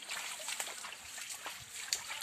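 Shallow stream trickling and splashing over rocks, a steady hiss of running water with a few light clicks.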